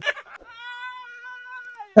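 A short burst of laughter, then a man's long, high-pitched squealing laugh held on one note for over a second, dipping slightly at its end.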